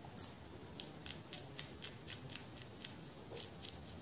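Fingertips and long nails working through short hair at the scalp during a hair massage: a quick run of crisp crackling ticks, about four a second.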